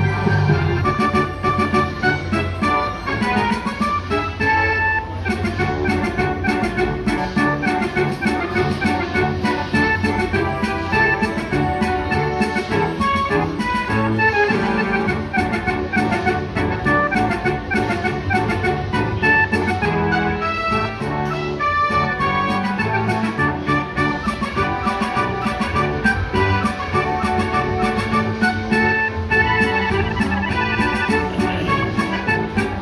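Captain Cutthroat slot machine playing its electronic free-games bonus music, a busy organ-like tune with fast high ticking over it, while bonus wins pay out.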